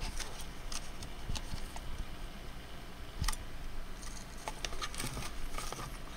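Handling noise: faint, irregular taps and rubbing as fingers move over the camera and the 3D-printed plastic gauntlet, over a low steady hum.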